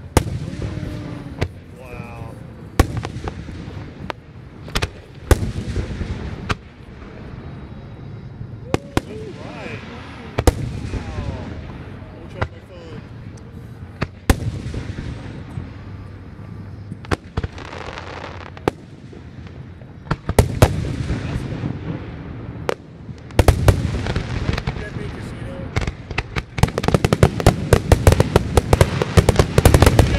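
Aerial fireworks shells bursting: single sharp reports every second or two at first, building to a rapid barrage of many bursts in the last few seconds as the grand finale goes off.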